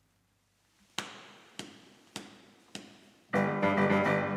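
Four sharp, evenly spaced taps about 0.6 s apart, like a count-in, after a near-silent pause. On the next beat a small ensemble of bassoons with keyboard comes in loudly with sustained chords.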